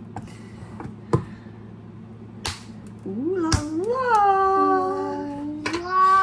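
A metal paint can's lid being pried open, with two sharp clicks in the first half. From about halfway, a voice hums a rising note and then holds it, going up again near the end.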